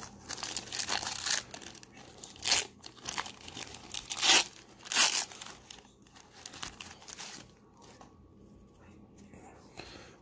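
Foil-lined wrapper of a 1990-91 Pro Set hockey card pack being torn open and crinkled by hand. It comes as a series of crackling rips, loudest about two and a half, four and five seconds in. Fainter rustling follows as the cards are worked out of the wrapper.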